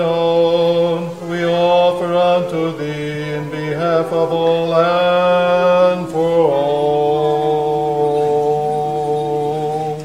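Church choir singing a slow Orthodox liturgical hymn in several voice parts, holding long sustained chords. The chord changes about two-thirds of the way through, and the singing ends near the close.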